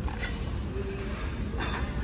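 Steady low store background hum, with faint handling noises as dishes are set back on a metal shelf.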